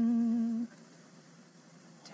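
A lone voice holding one low sung note with a slow vibrato, the tail of an a cappella spiritual intro; it cuts off sharply about two-thirds of a second in, leaving near silence.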